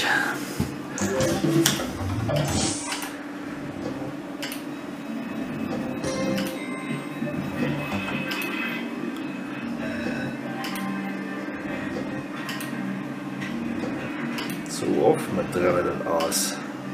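Merkur slot machine's electronic game music and jingling payout chimes as the cashpot counts over into the bank, with clicks in the first few seconds and indistinct voices nearby.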